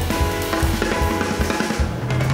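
Jazz piano trio playing a fast, busy passage: runs on a Steinway grand piano over active drum-kit playing with snare, bass drum and cymbals, and bass underneath.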